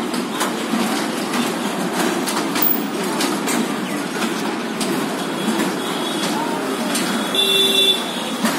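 Steady mechanical rumble with scattered clicks and rattles from a turning kiddie carousel of toy ride-on jeeps, with a short horn-like toot near the end.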